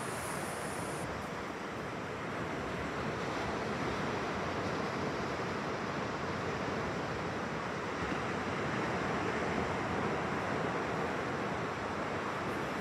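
Ocean surf washing onto a flat beach, a steady rush of breaking waves that grows slightly louder about two-thirds of the way in.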